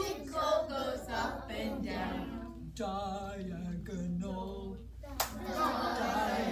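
A woman and a group of young children singing together in unison, with one sharp click about five seconds in.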